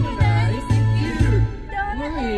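Karaoke: a man singing into a handheld microphone over an amplified backing track, with a bass note on each beat about twice a second.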